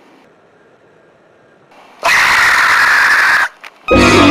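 A sudden loud, harsh shriek about halfway in, lasting over a second and cutting off sharply. Music starts just before the end.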